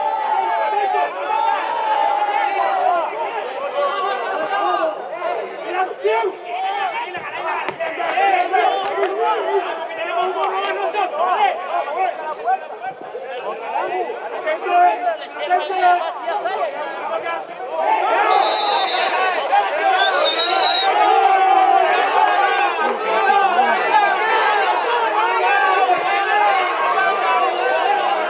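Spectators chatting at a football match: many overlapping voices, none clearly in front, getting louder about two-thirds of the way in.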